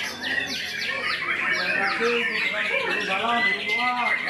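White-rumped shama (murai batu) singing: a fast string of short, falling whistled notes, then a few rising-and-falling notes near the end.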